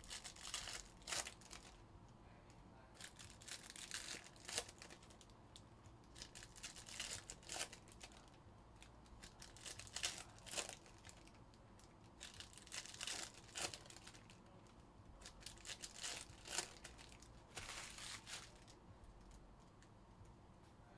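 Trading-card pack wrappers being torn open and crinkled by hand, in short faint rips every second or two.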